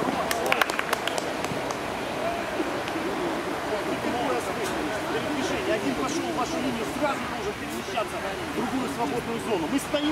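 Indistinct shouting and calling from several players' voices, over a steady background rush of noise. A few sharp knocks come in the first second.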